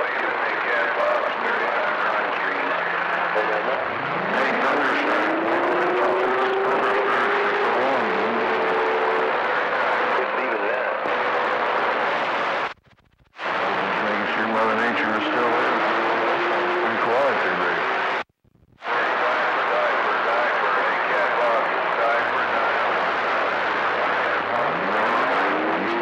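CB radio receiver on channel 28 (27.285 MHz) giving out steady band hiss with faint, unreadable voices buried in it. Whistling tones glide upward in pitch several times, and the audio cuts out briefly twice. The band is weak, or 'bone dry', with no clear station coming through.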